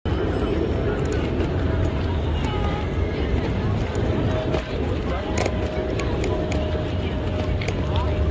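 Busy street ambience: indistinct chatter of passersby over a steady low traffic hum, with a few short clicks.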